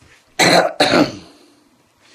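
A man coughing twice in quick succession, two harsh bursts about half a second apart.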